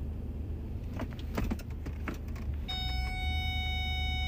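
Car interior with the engine idling as the automatic gear selector is clicked into reverse, a few clicks about a second in. Near the end a steady, unbroken high warning tone from the reversing parking sensors begins. A tone that does not break into beeps means an obstacle is very close behind.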